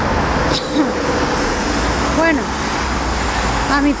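Steady road traffic noise from a multi-lane city street, with a low rumble of passing cars.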